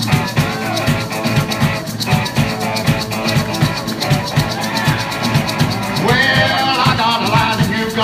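Live rock-and-roll band playing a driving beat with drums and electric guitar; about six seconds in, a loud, wailing harmonica line comes in over the band.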